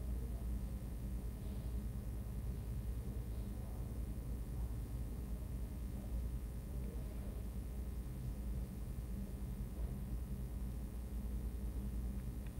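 Quiet room tone with a steady low hum; the fine brush strokes leave no distinct sound.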